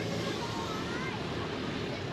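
Steady outdoor background noise: an even hiss with no distinct event standing out.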